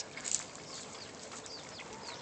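Faint bird chirps: short, high, falling notes repeating about every half second.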